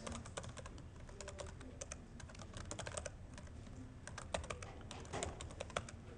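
Typing on a computer keyboard: a fast, uneven run of light key clicks.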